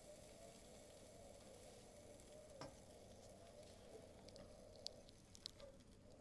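Near silence: faint room tone with a steady low hum and a few small faint ticks, one about halfway through and a handful near the end.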